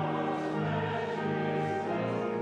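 Congregation and choir singing a hymn over pipe organ, with long held chords that change about once a second.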